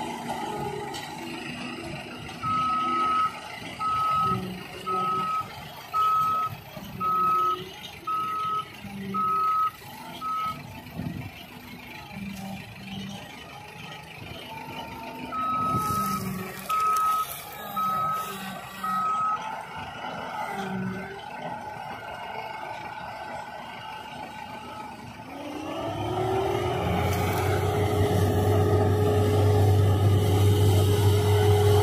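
A reversing alarm on sugarcane field machinery beeps steadily about once a second, a run of eight beeps, a pause, then four more, over the running engines of the cane harvester and the tractor pulling the haul-out wagon. Near the end an engine revs up, rising in pitch and then holding louder.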